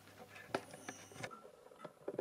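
Quiet room tone with one small click about half a second in and a few fainter ticks.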